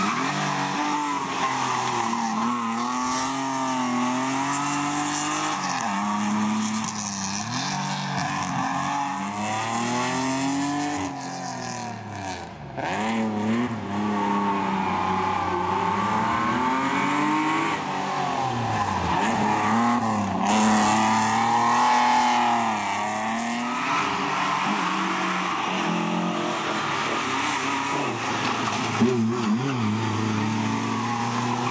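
Mercedes-Benz 124-series coupé rally car's engine driven hard, its revs rising and falling again and again through gear changes and lift-offs for the bends. Several passes follow one another with short breaks between them.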